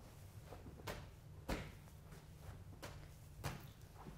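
A 14-pound medicine ball being thrown to a wall target and caught, repeated: two pairs of dull thuds about half a second apart, from the ball striking the wall and landing in the hands, one pair about a second in and the other near the end.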